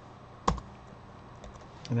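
A single sharp computer keystroke about half a second in, followed by a few faint key taps, as a value is entered into a spreadsheet cell.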